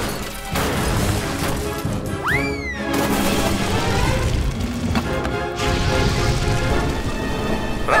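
Cartoon background music with sound effects: a crash as hot coals spill and a trash can tips over, and a whistle that rises sharply and falls away about two seconds in.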